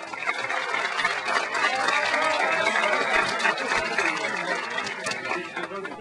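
A crowd applauding, a steady dense patter of many hands clapping that tapers off near the end.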